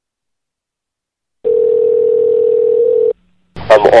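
Telephone line tone: one steady tone that starts about a second and a half in and stops after under two seconds, followed by a voice on the call near the end.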